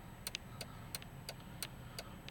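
Car turn-signal indicator ticking evenly inside the cabin, about three clicks a second, over a low steady rumble of the idling SUV.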